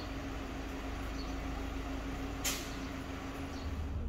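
Steady low mechanical hum with a constant drone, and a short sharp hiss about two and a half seconds in.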